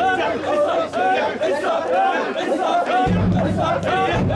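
Crowd of mikoshi bearers shouting and chanting all around while carrying a portable Shinto shrine, many voices overlapping. A steady low hum comes in about three seconds in.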